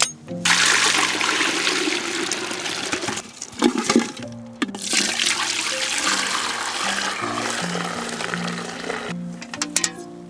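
Dark liquid being poured from one pot into another in two long, splashing pours, with a few metal knocks from the pots in the short pause between them.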